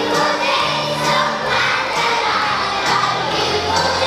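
A group of young children singing and shouting along to recorded backing music with a beat.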